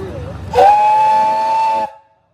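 Steam whistle of a Case steam traction engine blown once, a steady chord of several notes held for a little over a second and cut off sharply.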